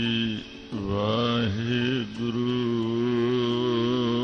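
Devotional music: a voice holding long chanted notes, gliding up into them and wavering with vibrato, over a steady low drone, with two short breaks between phrases.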